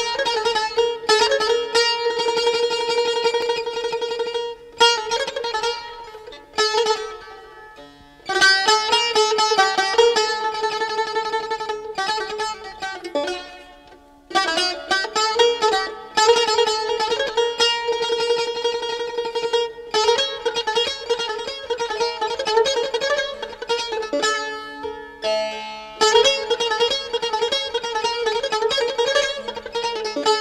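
Persian classical chahar mezrab in dastgah Homayun, played on a string instrument: fast, rhythmic strokes circling a repeated drone note. It comes in phrases broken by a few brief pauses and quieter passages.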